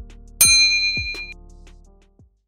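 A bright bell-like ding sound effect about half a second in, ringing for nearly a second before dying away, over an instrumental beat with deep kick drums.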